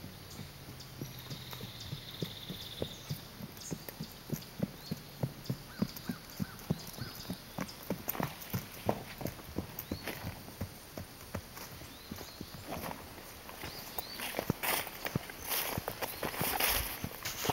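Hoofbeats of a horse trotting on soft dirt and grass: a steady run of dull knocks, about three a second. Louder scuffing and rustling come in near the end.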